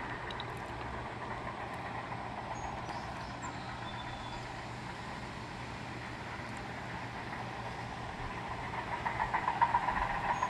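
Distant diesel engines of heavy earthmoving equipment running steadily, working in the creek bed. About nine seconds in the sound grows louder and rougher.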